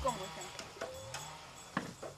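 Faint background chatter from people at a table, with a few light clicks, the sharpest near the end.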